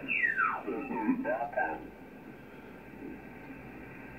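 Icom IC-7600 HF receiver audio on 10 m upper sideband as the tuning knob is turned across a station: a garbled voice slides steeply down in pitch for about a second until it comes through as speech, then gives way to faint band noise.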